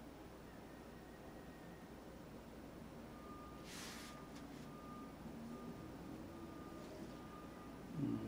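Faint room tone. About three seconds in, a faint high electronic beep starts repeating evenly, about one and a half times a second, with a short hiss just before the fourth second.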